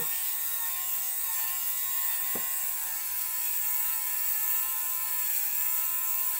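Battery-powered Torras lint remover (fabric shaver) running with a steady whirring hum, its pitch wavering slightly as it is worked over a bobbly coat, shaving off the pilling.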